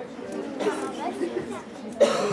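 Indistinct chatter of several voices, no clear words.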